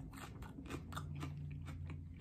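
A raw Caribbean Red habanero pod being bitten and chewed: a quick, irregular run of small crisp crunches from its crunchy, thin-walled flesh.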